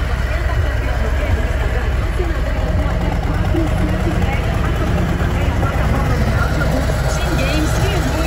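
Harley-Davidson Electra Glide Ultra Limited's Milwaukee-Eight 107 V-twin idling steadily, with faint voices in the background.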